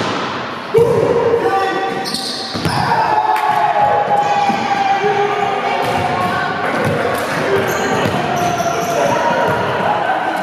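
Volleyball being struck during play, with a loud, sharp smack about a second in that echoes through a large gymnasium; players' voices call out across the hall.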